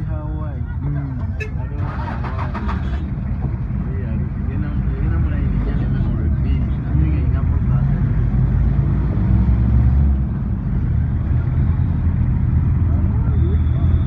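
Engine and road noise of a car heard from inside, idling in traffic and then pulling away, growing louder about five to seven seconds in as it gets moving. Voices are heard near the start, and a short burst of rattling comes about two seconds in.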